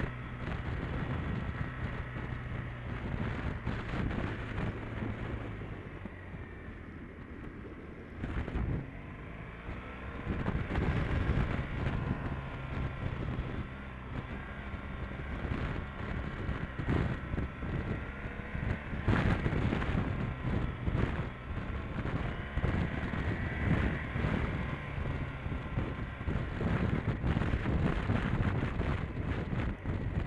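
Motorcycle engine running while riding, its note rising and falling with the throttle, under wind buffeting the microphone. There are a few sharp thuds along the way.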